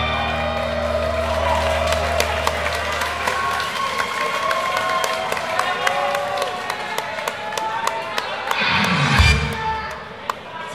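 A live idol-pop backing track reaching its end, its bass dying away about four seconds in, as the audience cheers, shouts and claps. There is a loud burst of sound near the end.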